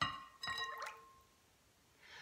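A mug clinks against a glass mixing bowl, which rings briefly, then eggnog is poured and drips into the bowl for about a second.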